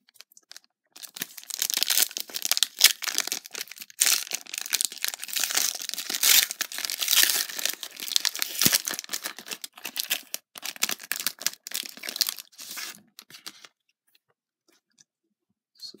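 A 2016-17 NBA Hoops trading card pack's shiny plastic wrapper being torn open and crinkled by hand: a long run of rapid crackling and tearing, loudest in the first half, that stops a couple of seconds before the end.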